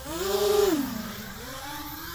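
A small quadcopter's electric motors buzzing, their pitch rising early on, holding, then dropping about halfway through and climbing again toward the end.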